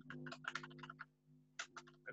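Computer keyboard typing, faint: a quick run of keystrokes for about a second, a short pause, then a few more keystrokes near the end, over a faint steady hum.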